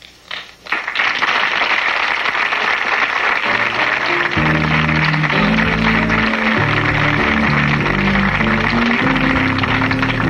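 Studio audience applauding, with the closing theme music coming in over it about three and a half seconds in: a bass line and chords.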